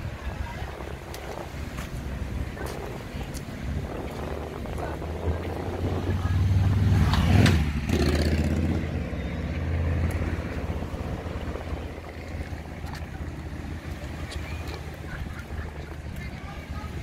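A motor vehicle drives past close by: its engine sound builds over a few seconds, is loudest about seven seconds in with a drop in pitch as it goes by, and fades away over the next few seconds.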